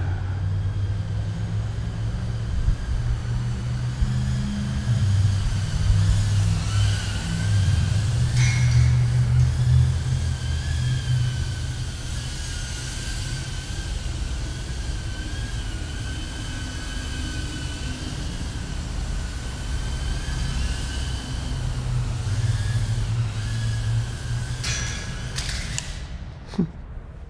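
BetaFPV Meteor65 tiny whoop's small brushless motors whining steadily, the pitch wavering up and down with throttle over a low rumble. Near the end there are a few sharp knocks as the quad comes down and is disarmed.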